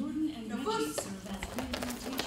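A person's voice calling out briefly, followed by a run of light clicks and taps in the second half.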